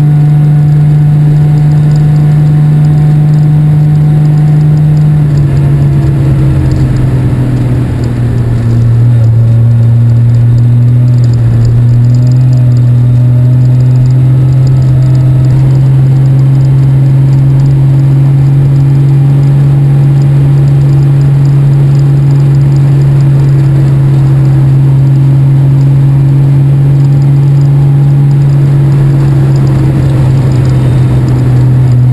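Citroën Traction Avant 15 Six's straight-six engine running steadily under way. Its note drops about five seconds in, is briefly quieter near eight seconds, then pulls steadily again at a slightly lower pitch.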